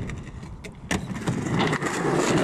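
Skateboard wheels rolling over concrete in a steady rough rumble, with one sharp knock about a second in.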